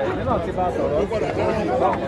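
Several people talking at once close by, an unbroken overlapping chatter of voices with no single clear speaker: spectators at the touchline of a football match.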